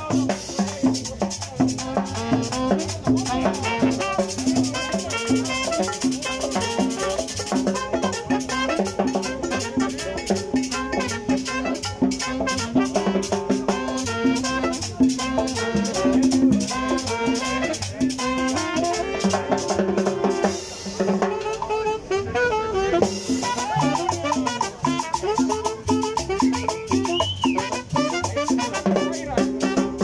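Live Latin dance music in a salsa style, driven by a metal güira scraped in a steady rhythm, with drums, cymbal and pitched instruments. The high scraping drops out briefly about two-thirds of the way through, then comes back.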